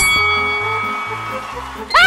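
Television show sting music over a title card: a bright chime rings out at the start and fades slowly over a stepped bass line. Right at the end a voice starts singing with a wide vibrato.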